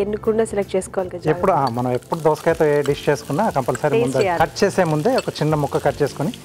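A person speaking without pause, with a faint sizzle of food frying in a pan underneath.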